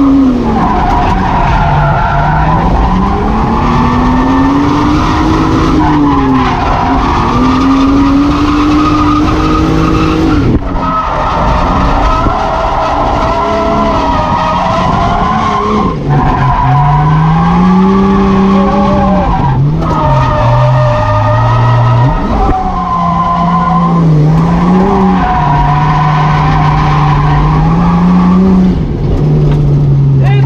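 Drift car's engine revving hard through a drift run, its pitch climbing and falling with the throttle, with a few brief lifts, over the hiss of tyres sliding and squealing, heard from inside the roll-caged cabin.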